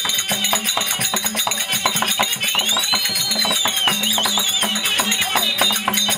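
Therukoothu accompaniment music: hand drums and jingling percussion played in a fast, dense rhythm. About halfway through, a high tone glides up, holds, then wavers before fading.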